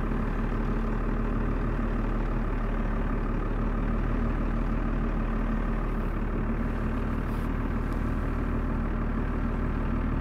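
Pickup truck engine running slowly and steadily in four-wheel-drive low range, creeping forward under load as it tows a shed on a chain.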